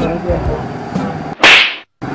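A short, very loud whip-like swish sound effect about one and a half seconds in, cut off abruptly into dead silence. Before it, background music plays.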